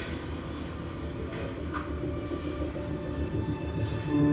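A steady low rumble with faint sustained tones over it, from a television's soundtrack playing in a room.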